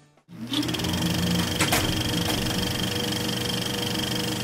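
Sound effect of an old film-reel mechanism running. It spins up with a rising whine a moment in, then settles into a steady, fast mechanical clatter with a high whine over it.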